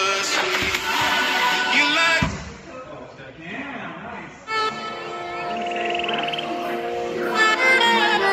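Background music, a song with vocals; it drops to a quieter, thinner stretch about two seconds in and comes back fuller about halfway through.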